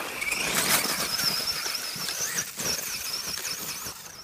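Electric motor and gear whine of an Axial Wraith RC rock crawler being driven, a high whine that wavers up and down in pitch as the throttle is worked.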